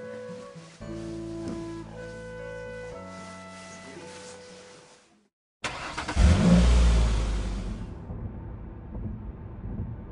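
Soft background music fades out to a brief silence, then a car's engine and road noise heard from inside the cabin cut in, starting loud with a deep rumble and easing off over a couple of seconds to a steadier drone.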